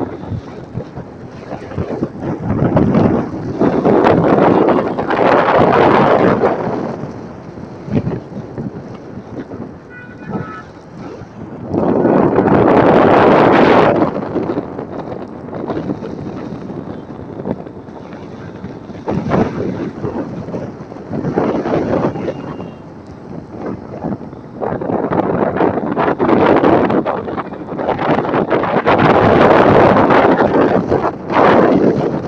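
Wind buffeting the phone's microphone as it rides in a moving vehicle, a rough rumbling noise that swells into loud gusts and drops back, mixed with road and traffic noise.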